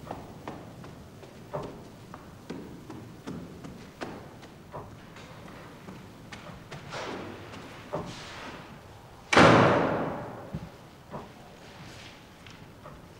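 Slow footsteps on a wooden staircase and floor, about one step a second. About nine seconds in comes a loud slam that rings on for about a second.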